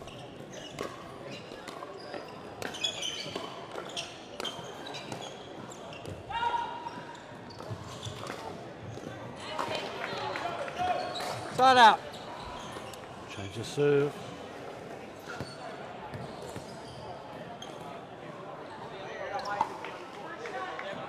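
Pickleball rally: paddles hitting a hard plastic ball again and again in sharp pops, in a large indoor hall. Voices from the players and other courts run underneath, with a loud short shout about twelve seconds in.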